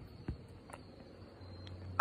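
Quiet background noise with two faint, short clicks, one about a quarter of a second in and another near the middle.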